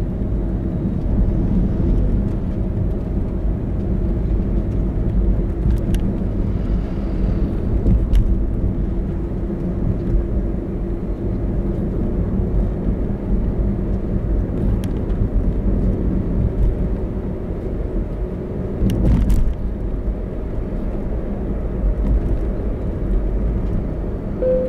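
Car driving at a steady speed, heard from inside: a steady low rumble of tyre and road noise with a faint engine drone. A few brief clicks break through, the clearest about 19 seconds in.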